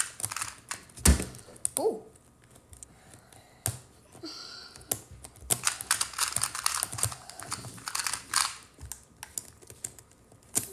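Plastic pieces of a 4x4 puzzle cube clicking and clacking as it is handled, with pieces pried out and pushed back in. There is one loud knock about a second in, then a busy run of clicks through the second half.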